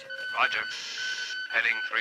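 A voice made thin and tinny as if over an aircraft radio says "Roger", followed by a short burst of hiss like radio static. A faint, steady high tone that breaks off and on runs underneath.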